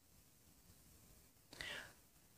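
Near silence: faint background hiss, with one faint, brief, breath-like sound near the end.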